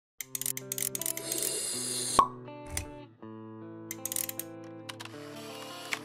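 Channel intro jingle: short electronic music of held notes with many quick clicks layered over it, and a sharp hit about two seconds in, the loudest moment.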